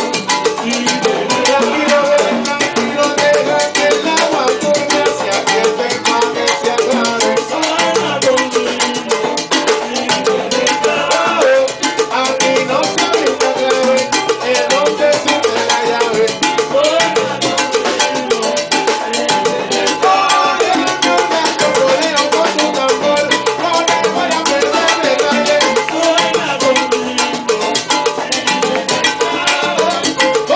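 Live salsa band playing a full-band passage, with congas driving the rhythm over piano and bass.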